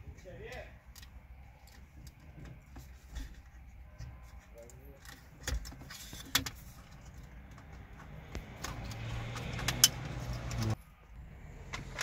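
Plastic trim and a cable connector around a Citroën C4 Picasso's steering column being handled and unclipped: scattered small clicks and rattles, then a louder stretch of rubbing with one sharp click near the end, which stops abruptly.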